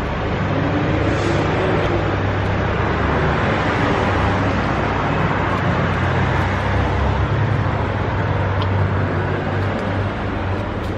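Steady road traffic noise: vehicles running on a nearby street, with a constant low engine hum underneath.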